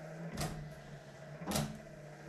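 International Scout II windshield wipers running across the glass: a steady low motor hum, with a short swishing stroke from the wiper linkage about once a second as the arms reverse.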